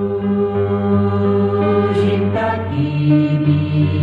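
A choir singing slow, sustained chords in Slovak, the notes held long and changing every second or so.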